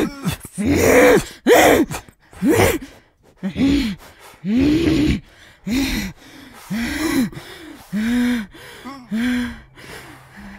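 A woman's manic, gasping laughter: a string of loud, breathy voiced gasps about one a second, growing weaker. A low steady drone comes in near the end.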